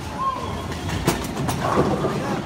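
Bowling alley: a low, steady rumble of bowling balls rolling down the lanes, with two sharp clacks about a second in and short bits of children's voices.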